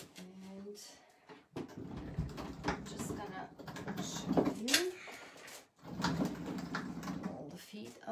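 Wooden furniture being handled and turned around: an old oak shelf unit scraping and knocking on a work surface, with several sharp wooden knocks, the loudest a little past the middle.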